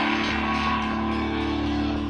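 Amplified electric guitar holding a chord that rings on steadily through the stage amplifiers at a live rock show.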